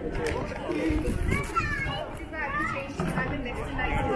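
Passers-by talking, with high children's voices calling out twice in the middle, over a low background rumble.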